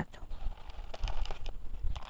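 Potting substrate poured from a plastic scoop into a pot of soil, giving a few faint, scattered soft ticks and patters.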